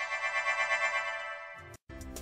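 Background music: a sustained electronic chord with a quick, light pulsing, slowly fading, broken by a brief dropout to silence near the end.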